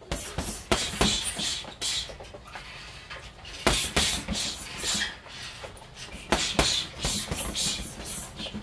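Gloved hooks and elbows landing on a hanging teardrop heavy bag, thudding in quick sets of about four strikes, repeated several times.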